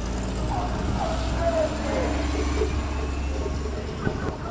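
A New York City transit bus's engine running close by, a steady low rumble that drops away near the end as the bus moves off, with street voices over it.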